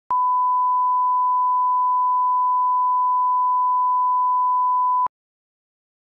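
Steady 1 kHz broadcast line-up tone, a single pure beep held for about five seconds before cutting off suddenly. It is the reference tone that accompanies colour bars for setting audio level.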